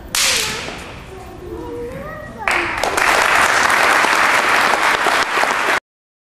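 A sharp crack as a wooden stick is struck hard against a bare torso in a Golden Bell chi gung demonstration, followed by voices exclaiming. From about two and a half seconds in, audience applause, which cuts off suddenly near the end.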